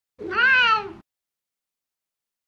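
A domestic cat meowing once, a single call just under a second long that rises and then falls in pitch.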